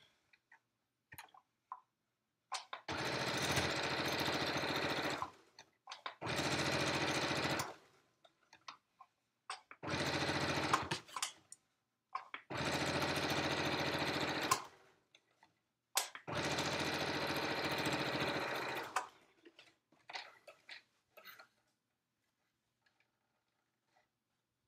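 Domestic electric sewing machine stitching in five separate runs of a few seconds each, with short pauses between them holding only small clicks and handling noises.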